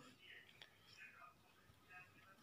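Near silence, with faint whispering.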